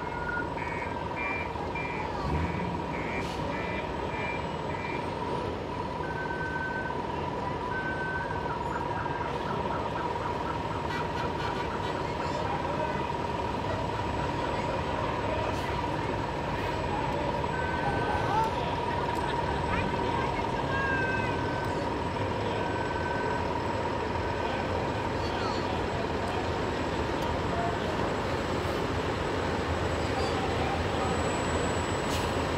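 Parade trucks driving slowly past, a heavy cement mixer truck's diesel engine among them, over a steady high tone. About seven short electronic beeps in the first few seconds, with scattered beeps and voices later.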